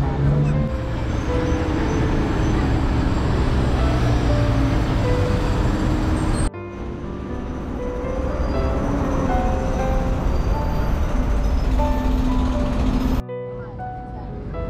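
Steady city traffic and street noise under light background music, cutting off abruptly twice as the footage changes.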